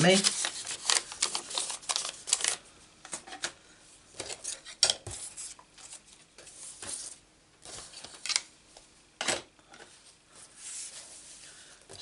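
Paper craft materials being handled on a work table. A thin paper envelope rustles for the first couple of seconds, then come scattered light clicks and taps of items being moved and set down, two of them sharper, about five and nine seconds in.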